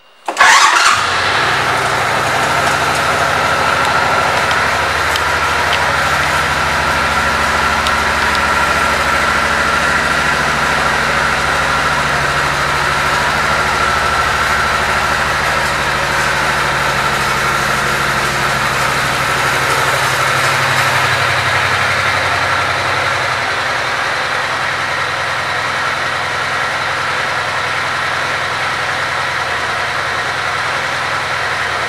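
A 2008 Suzuki Boulevard C90T's 1500 cc V-twin engine starting up with a sudden burst, then idling steadily. The idle settles a little lower and quieter about three quarters of the way through.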